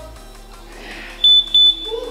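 Interval timer sounding two short, loud, high-pitched beeps in quick succession, signalling the end of the 45-second work set and the start of the rest period.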